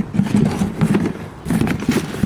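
Scraping and rustling of a rubber mower-deck drive belt and parts being handled in a cardboard box, in irregular bursts with the sharpest scrapes near the end.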